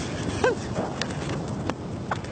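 A man's short burst of laughter about half a second in, over steady outdoor background noise.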